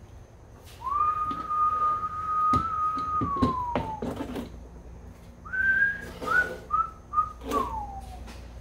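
A man whistling: one long held note that slides down at its end, then a run of five short notes stepping downward. Knocks of a hard plastic tool case being handled and set down on a table come under the first note.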